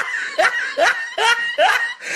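A person laughing: a run of short chuckles, about two or three a second, each rising sharply in pitch.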